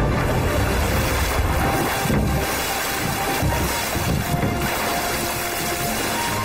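A large mass of water surging out of a big wooden tub and spraying down in a steady rushing splash, with background music.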